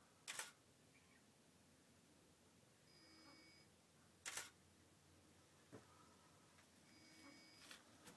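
Faint camera shutter clicks over near silence, three of them about every four seconds, each coming about a second after a short, faint high tone. The regular pattern fits a Canon 5D Mark II firing frame after frame on a Gigapan Pro robotic panorama head.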